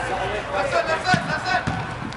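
Soccer ball thudding twice from kicks during play, with players' voices calling faintly in the background.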